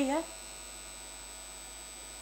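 A woman's voice ends a word right at the start, then a steady electrical mains hum with a faint high-pitched whine, unchanging until the end.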